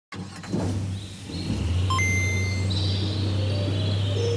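Intro of an electronic dance remix. A steady low bass drone comes in about a second and a half in, with short electronic beeps and a held high tone above it.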